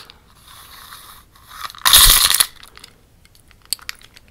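Close-up handling noise: a loud scrape or rustle lasting about half a second, about two seconds in, followed by a few light clicks near the end.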